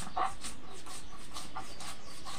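Spices and cumin being ground by hand on a stone grinding slab (sil-batta): a rhythmic back-and-forth scraping of stone on stone, about four strokes a second.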